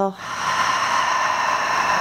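A woman's long, audible sigh out through an open mouth: a steady, breathy exhale that starts just after the beginning and is held evenly.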